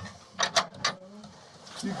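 A door latch on a plywood door being worked by hand: a quick cluster of about five sharp clicks and rattles between about half a second and one second in, as the jammed latch is forced from inside.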